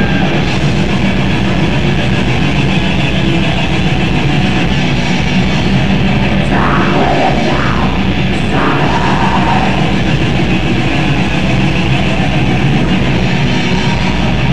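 Black metal band playing live: distorted electric guitars and fast drumming in a dense, loud, unbroken wall of sound.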